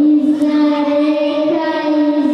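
A young girl singing solo into a handheld microphone, holding long steady notes.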